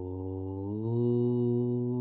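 A man's low voice chanting one long "Om", held on a steady note that steps up slightly in pitch about a second in.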